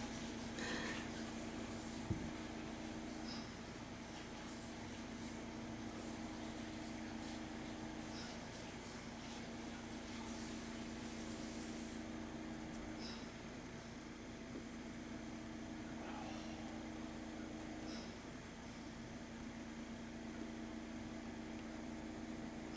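Low steady hum of a home oxygen concentrator, with a faint click about every five seconds as its cycle switches. A single light knock about two seconds in.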